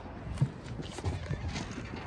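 A few dull, irregular knocks over a low rumble: footsteps on pavement and handling of a phone as it is carried.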